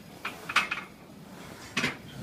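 Metal clanks of a barbell and weight plates: a quick cluster of clanks about half a second in, and one sharp, ringing clank near the end.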